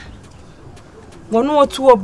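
A pause with only faint background noise, then about a second and a half in a woman's voice comes back with a drawn-out, wavering vocal sound that rises in loudness.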